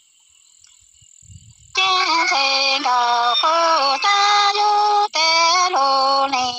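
A woman's voice singing Hmong lug txaj in long, held notes that bend slightly in pitch. It starts after a near-silent pause of almost two seconds.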